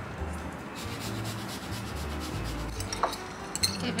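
Fresh ginger rubbed across a small handheld grater, a soft steady grating, then a few light clicks of a metal spoon against a ceramic bowl near the end.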